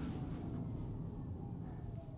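Cabin noise of a Tesla Cybertruck slowing down: a steady low road and tyre rumble with a faint whine that falls in pitch as the truck decelerates.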